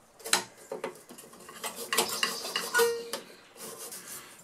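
Stiff bristle brush scrubbing dust off a rusty steel radio chassis in quick, irregular strokes, the bristles scraping and clicking against the metal.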